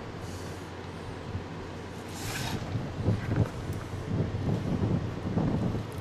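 Steady low room hum, then a short scrape as the sliding glass door of a snake enclosure is opened, followed by soft irregular knocks and rustles from feeding tongs offering prey to the snake.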